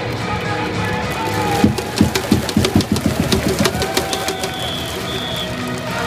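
A baseball cheering section's brass fanfare played live in the stands of a domed stadium, with held trumpet-like notes. About a second and a half in comes a quick run of sharp percussive strikes lasting about two seconds, then a long held high note.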